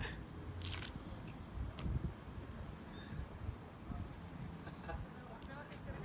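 Faint distant voices over a steady low outdoor rumble, with a few light clicks.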